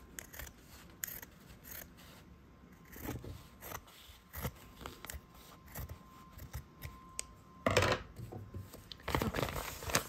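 Fabric scissors snipping along a quilt block's seam, trimming the fabric to a quarter-inch seam allowance: a string of short, irregular cuts, the loudest about three-quarters of the way in.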